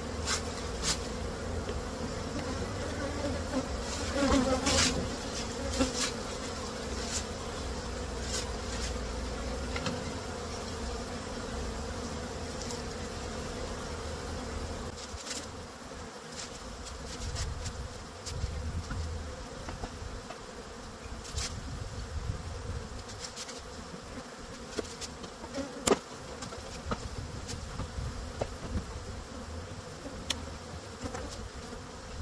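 Honey bees buzzing steadily around open hive boxes, with scattered knocks and clicks of wooden hive equipment being handled; the sharpest knock comes near the end.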